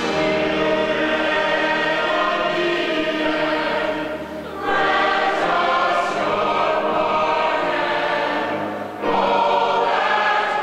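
Large mixed chorus of men and women singing long held notes. The sound dips briefly about halfway through and again near the end, and a new phrase comes in after each dip.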